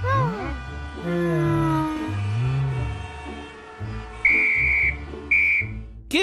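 Two short, shrill whistle blasts near the end, a referee's whistle at a soccer match, over cartoon background music whose notes slide down in pitch.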